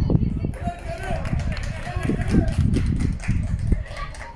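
Voices calling out on an outdoor football pitch during a youth match, in short scattered calls over a loud, uneven low rumble.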